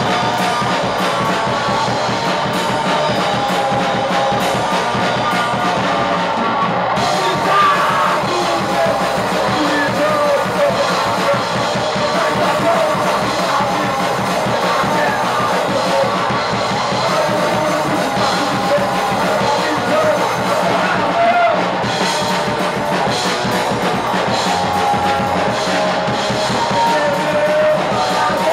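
Punk rock band playing live, with drum kit and electric guitar going continuously at an even, high level.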